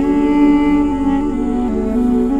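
Armenian duduk playing a slow melody, holding one long note that steps down to a lower note in the second half, over a steady low drone.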